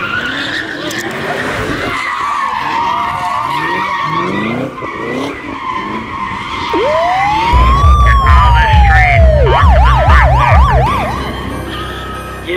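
A car doing a tyre-smoking burnout: tyres squealing steadily with the engine revving. About seven seconds in, a siren wails up and down once, then switches to a fast yelp, over a heavy low rumble.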